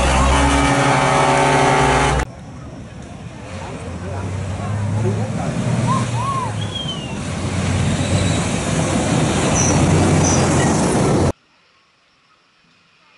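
MAN 6x6 Dakar rally truck's engine running steadily as it drives past. After a cut, the truck approaches at speed on a dirt road, its engine growing louder over several seconds as it nears. The sound cuts off abruptly near the end.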